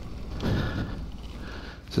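A person's heavy sigh, a single breathy exhale about half a second in, over a low steady rumble on the microphone.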